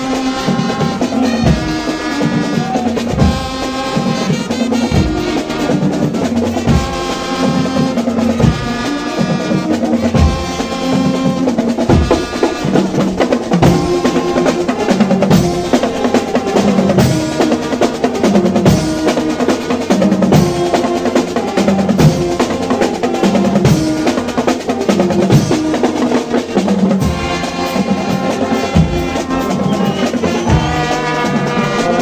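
A marching band playing: drums play throughout, with snare rolls and bass drum strokes, while trumpets, euphoniums and sousaphones come in and out in phrases.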